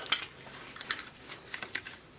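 Small clicks and taps of tactical belt gear, nylon webbing and plastic fittings, being handled on a desk: a sharper click at the very start, then a few faint ticks.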